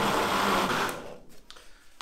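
Mondial Turbo Chef countertop blender running, blending chopped bananas with condensed milk, cream and milk powder into a thick cream; it stops about a second in.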